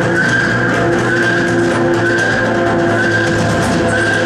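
Live psychedelic electronic music: a steady low drone under held middle tones, with a short high gliding whine repeating about every half second.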